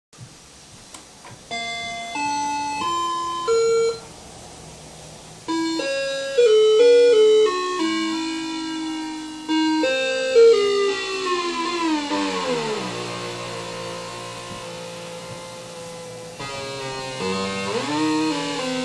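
Circuit-bent Talk and Learn Alphabet toy putting out glitched electronic tones that jump from pitch to pitch in steps. A little past halfway the sound slides steadily down in pitch and settles into a low steady drone, then climbs again near the end.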